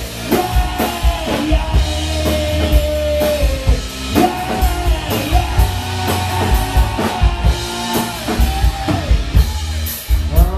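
Live rock band playing loudly: drum kit hits, bass and electric guitar. A long held note slides down in pitch a few seconds in, then holds again.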